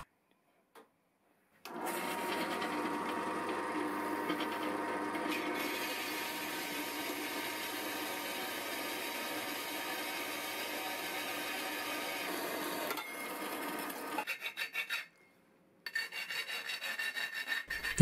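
Metal-cutting bandsaw running steadily through a thin-wall steel tube at an angle, starting about two seconds in and easing off about thirteen seconds in. After a short pause near the end, short repeated rasping strokes of a hand file dressing the cut tube end.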